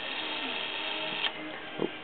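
Brass clock movement's gear train worked by hand, a light steady mechanical whirring with one sharper click a little past halfway.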